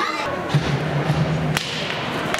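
Ice hockey rink sound: a sharp crack of a stick hitting the puck about three-quarters of the way in, over a constant wash of skates on ice and arena noise. A low steady hum lasts about a second just before the crack.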